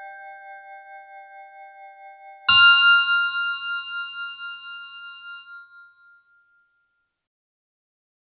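Music: ringing bell-like keyboard tones, a chord left from earlier notes fading out, then one new chord struck about two and a half seconds in that rings and dies away over about four seconds.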